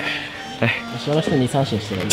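Men's voices talking briefly over background music with a steady tone.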